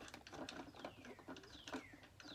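A bird calling twice, each a clear whistle falling in pitch and lasting about half a second, faint, over a few light clicks of plastic parts being handled.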